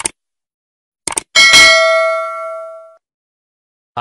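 Subscribe-button animation sound effect: a short click, a quick double click about a second in, then a bright bell ding that rings out and fades over about a second and a half.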